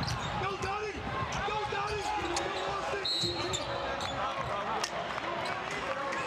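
Arena sound of a live college basketball game: a basketball dribbled on the hardwood court over crowd chatter, with a short high referee's whistle about three seconds in calling a foul.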